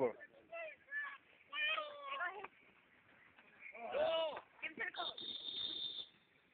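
Shouting voices on a youth football field as a play runs, then a steady, high whistle blast of about a second near the end, as the play is stopped.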